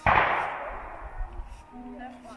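A sudden sharp bang, followed by a noisy tail that fades over about a second and a half.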